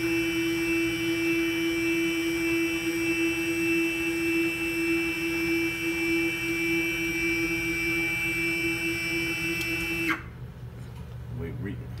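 Stepper motors of a Genmitsu PROVerXL 4030 CNC router whining steadily as they drive the gantry forward in a continuous jog toward the forward limit, then stopping abruptly about ten seconds in.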